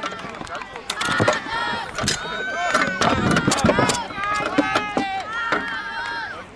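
Crowd shouting and cheering, cut by a run of irregular sharp knocks from sword blows striking shields during a close fight between Thraex gladiators.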